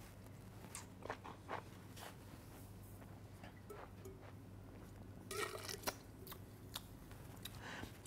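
Faint mouth sounds of wine being sipped and worked around the mouth, then a short cluster of spitting sounds into a stainless steel spittoon a little past the middle.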